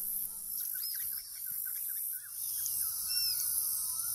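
Wild birds calling: a run of short quick chirps in the first half, then a clear arched whistle about three seconds in, over a steady high-pitched insect drone.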